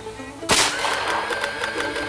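A single shot from an AirForce Condor pre-charged pneumatic air rifle running on its high-pressure air bottle at the medium power setting: one sudden sharp report about half a second in.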